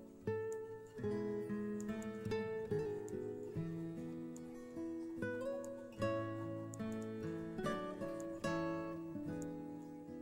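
Background music of plucked acoustic guitar: picked notes and chords, each struck sharply and ringing away, several a second.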